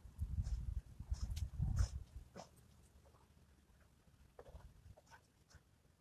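A man breathing hard in short puffs, about one or two a second, while doing push-ups; a low rumble of wind on the microphone covers the first two seconds.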